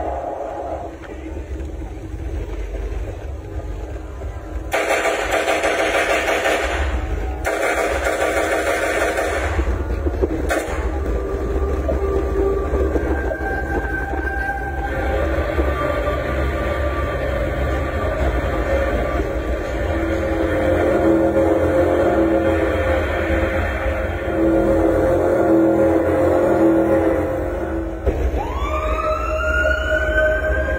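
Recorded soundtrack played over stage loudspeakers, with a steady low hum under it. A rushing noise comes in two bursts early on, then a run of held tones that shift in pitch, and near the end a siren-like wail rises and falls.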